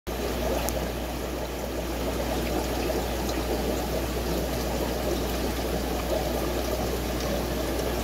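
Air-driven aquarium sponge filter bubbling steadily: air rising up the lift tube and breaking at the water surface in a continuous trickling burble, over a steady low hum.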